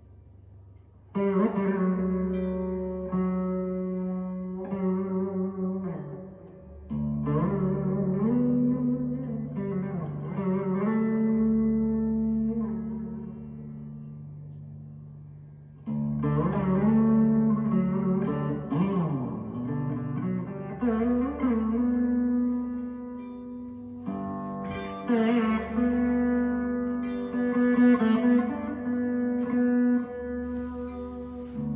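A veena plucked in four separate phrases, each left ringing, with notes bent by sliding along the string, as the player sounds and checks the strings while tuning up.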